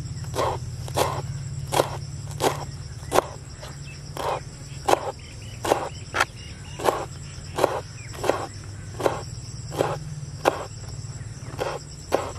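Kitchen knife chopping fresh coriander on a wooden cutting board: single, evenly spaced chops of the blade striking the board, about one and a half a second.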